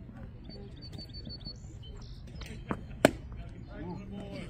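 A single sharp, loud pop about three seconds in, with a smaller knock a moment before it: a pitched baseball smacking into the catcher's leather mitt.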